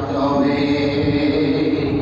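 A man's voice chanting in the melodic, sung style of a Bengali waz sermon, holding one long steady note for about a second and a half.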